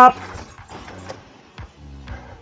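Mountain bike rolling over a rough trail, with a few light knocks and rattles from the bike.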